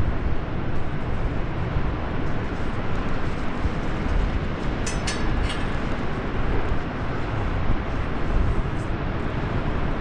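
Wind buffeting the camera microphone high up in the open, a steady, uneven low rumble. Around halfway through, a brief high metallic clinking of climbing hardware.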